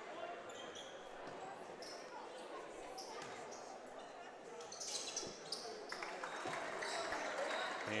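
Gym crowd murmur with a few faint bounces of a basketball on the hardwood floor around a free throw. The crowd noise rises a little in the second half.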